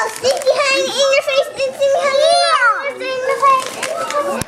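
A young child's high-pitched voice, vocalizing in a sing-song way with pitch gliding up and down.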